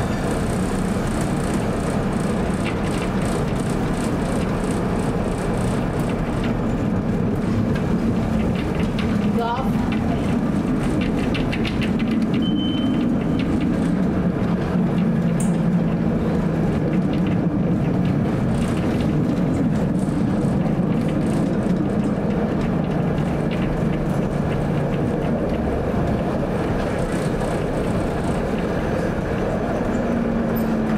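1947 PCC streetcar running along its rails, heard from inside: steady running noise with a low motor and gear hum that shifts in pitch as the car's speed changes. A brief rising squeal comes about nine and a half seconds in.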